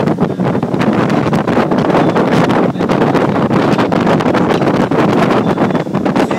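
Wind buffeting the microphone on a moving pontoon boat: a loud, continuous rush that flutters constantly.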